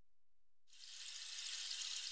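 A faint, steady hiss like running water fades in about a second in and holds.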